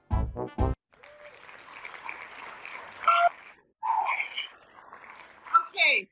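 Short keyboard chords break off about a second in, then applause follows, with a couple of brief cheers in it.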